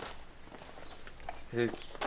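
Quiet outdoor background with one short voice sound, a brief word or laugh, about one and a half seconds in.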